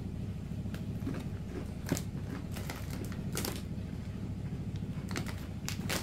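A person chewing crunchy everything-bagel pretzel chips with the mouth closed: irregular, scattered crunches, with a cluster near the end, over a steady low background hum.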